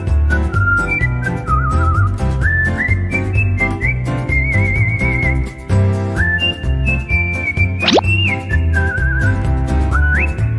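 Upbeat children's background music: a whistled melody with vibrato over a steady bouncy beat. About eight seconds in, a fast sweeping glide cuts across it.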